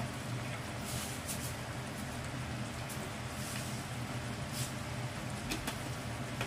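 Steady low hum of a kitchen exhaust fan, with a few faint pops and crackles from pork frying in a pan on a gas stove.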